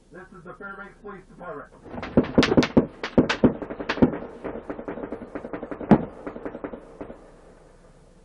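A man's voice over a patrol car's loudspeaker, addressing the driver. From about two seconds in it gets louder and is broken by a rapid, irregular run of sharp cracks that die away near the end.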